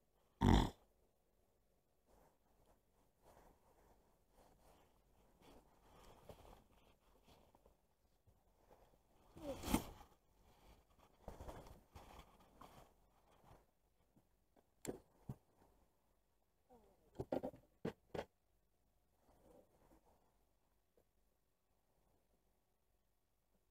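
Scattered handling noises from an angler working a baitcasting rod and reel with gloved hands: a short loud rustle about half a second in, a longer one about ten seconds in, and a few sharp clicks between fifteen and eighteen seconds.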